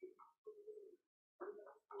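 Near silence, with faint, intermittent low sounds in the background.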